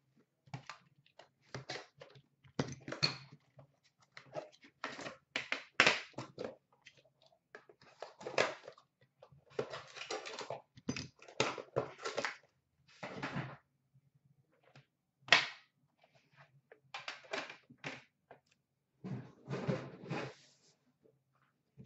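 Hands opening an Upper Deck The Cup hockey card box. Its cardboard packaging rustles and scrapes in short irregular bursts, with knocks as the box and its metal tin are handled and set down, the sharpest about fifteen seconds in.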